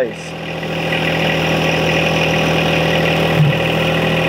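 John Deere 1025R compact tractor's three-cylinder diesel engine running steadily while its hydraulics work the loader off its mount. The sound builds over the first second, then holds steady.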